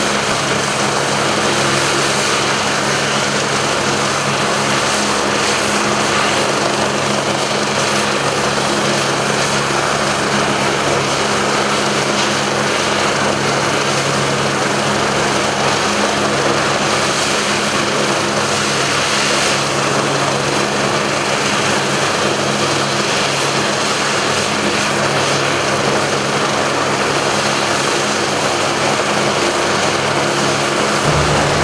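Eurocopter BK 117 twin-turbine helicopter running on the ground, its main and tail rotors turning: a loud, steady turbine and rotor sound with a low, even hum underneath. The engines have just been started and the external power cut off.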